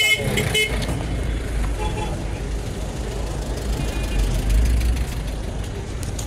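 Busy city street traffic: vehicle engines giving a steady low rumble, with a short car-horn toot right at the start and faint brief horn-like tones about two and four seconds in.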